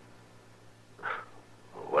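Radio-drama dialogue pause: a short, brief vocal sound about a second in, then a voice starts speaking near the end, over a steady low hum of the old recording.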